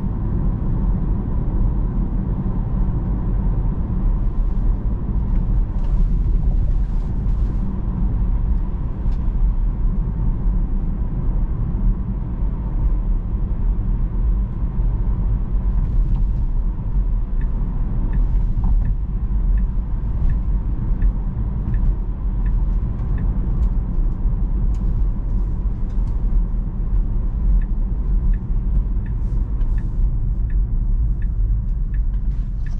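Road noise inside a Tesla electric car's cabin while it drives on a city street: a steady low tyre and road rumble. A little past halfway a light regular ticking starts, about one and a half ticks a second, as the turn signal clicks for a turn.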